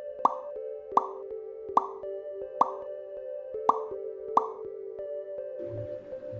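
Six short plop sound effects, spaced roughly three-quarters of a second apart, over steady background music.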